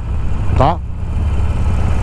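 Cruiser motorcycle engine running steadily at low revs while riding, a continuous low rumble.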